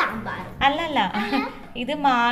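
A young child's voice making short, high-pitched vocal sounds with no clear words.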